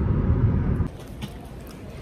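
Car cabin road noise, a steady low rumble from the moving car, cut off abruptly just under a second in, leaving faint quiet ambience.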